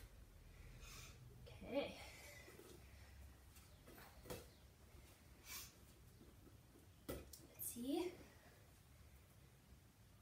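Near silence in a small room, with a few faint knocks and a couple of brief, faint voice sounds.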